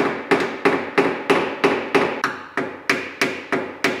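Paintless dent repair: a small hammer striking a tap-down tool against a dent in a car door panel, tapping the ding back in. The taps are steady and even, about four a second, each ringing briefly.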